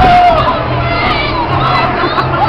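A group of people screaming and shouting excitedly after a water-ride boat's splashdown. One long high scream trails off about a quarter second in, then several voices shout and laugh over each other.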